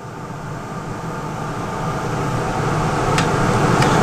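Laars Mascot FT gas-fired boiler running while firing, a steady rushing of its burner and combustion blower that grows gradually louder, with two small clicks near the end.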